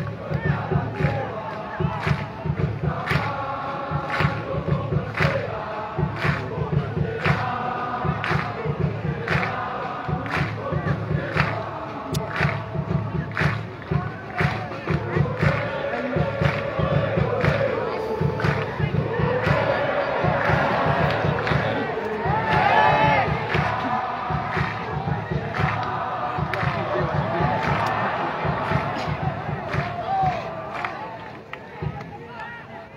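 Football supporters chanting in unison, with a steady drumbeat of about two beats a second.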